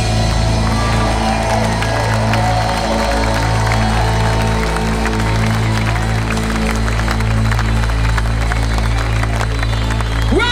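Live funk band holding a steady, low sustained chord while the audience claps and cheers, heard from within the crowd.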